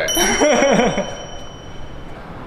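A bright bell-like ding, an edited-in sound effect, struck once at the start and ringing on steadily for about two seconds.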